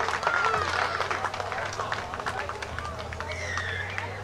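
Scattered shouts and calls from players and spectators at a rugby league match, with a low steady hum underneath.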